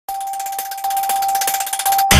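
Electronic logo sting of a news channel's intro: a sustained high tone with a rapid, shimmering ticking above it, building toward a deep hit.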